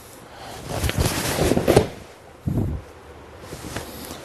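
Cotton martial-arts uniforms rustling and feet scuffing on the mat as an attacker is thrown in an aikido kokyunage, rising to a sharp peak just before two seconds in. A short low thud follows at about two and a half seconds, as the thrown man lands on the mat.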